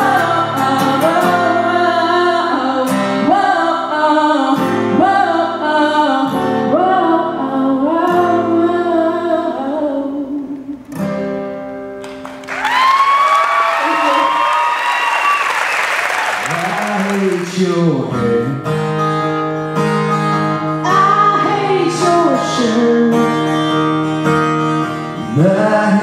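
Live country performance: a woman sings over steady held accompaniment until her song ends about eleven seconds in. Audience applause and cheering follow for about five seconds, then an acoustic guitar and a woman's voice start the next song.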